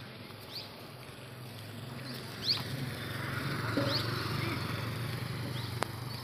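Motorcycle engine running as it approaches, growing louder over the first few seconds, with short bird chirps over it and a sharp click near the end.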